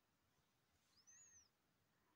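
Near silence, with one faint, brief high-pitched chirp about a second in that rises and then falls in pitch.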